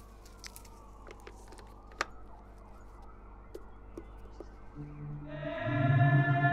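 A faint low hum with scattered sharp clicks and slow sliding tones, then a sustained synthesizer chord swells in about five seconds in: the opening of an electronic song.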